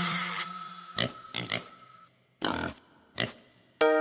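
A cha-cha children's tune ends on a held note that fades out, then a few short pig oinks and grunts come one after another in the gap. A new upbeat tune starts just before the end.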